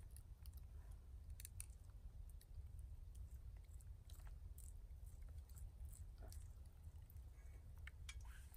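Faint, scattered soft clicks and scrapes of a metal fork raking cooked catfish flesh off a wooden plank into a pot, over a low background rumble.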